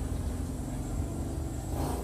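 Steady low rumble of background noise, with no other clear event.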